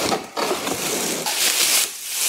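A cardboard box being torn open and pulled apart by hand, with a rough scraping and rustling of cardboard that is loudest about a second in.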